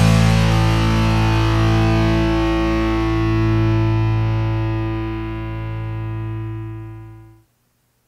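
The final held chord of a rock backing track: distorted electric guitar and bass ringing out on one sustained chord and slowly fading. It cuts off abruptly near the end.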